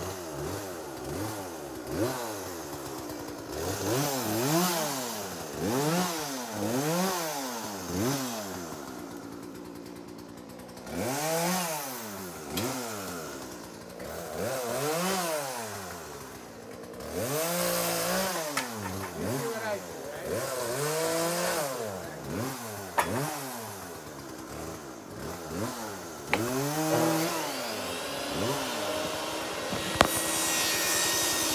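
Chainsaw engine revved in repeated short bursts, its note climbing and dropping about once a second, with a couple of brief lulls between runs.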